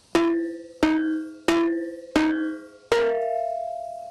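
Kenong, a gamelan kettle gong, struck five times at an even pace, about two-thirds of a second apart. Each stroke rings at a steady pitch: the first four on the same note, the fifth on a higher note that rings on longer.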